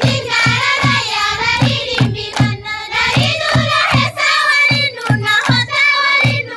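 Group of students singing together in unison, a traditional group song, over a steady clapped beat about three times a second with a low thump on each beat.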